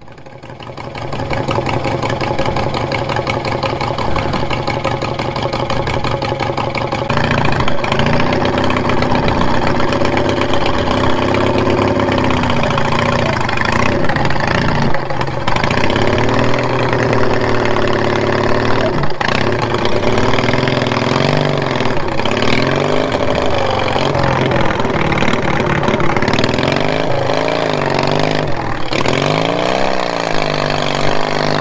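Riding lawnmower engine running close by, fairly steady for the first several seconds, then from about seven seconds in louder and rising and falling in pitch as the throttle is opened and eased while the mower works through mud.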